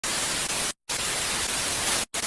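Television static hiss used as a transition sound effect, cutting out briefly for a split second a little before the middle.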